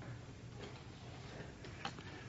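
Quiet room tone with a low steady hum and a few faint, sharp clicks, the clearest near the end.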